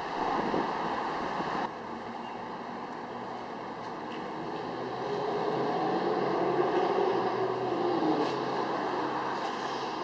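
A motor vehicle passing: a steady hum that swells from about five seconds in, is loudest around seven to eight seconds, then eases. Before that, a rushing noise cuts off abruptly about two seconds in.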